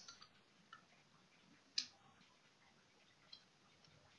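Near silence broken by a few faint computer mouse clicks, the loudest a single sharp click a little under two seconds in.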